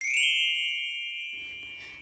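A bright, bell-like chime struck once at the start and left to ring, its high tone fading steadily over about two seconds; an edited sound effect over silence.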